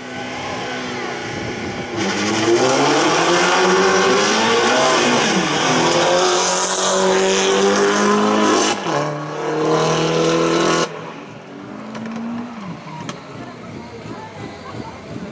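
Opel Corsa race car's engine accelerating hard through the gears, its pitch climbing and then dropping at each upshift. About eleven seconds in the sound drops abruptly quieter, and the engine falls in pitch as the car slows near the end.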